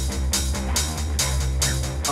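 Background music with a steady drum beat and a steady bass line.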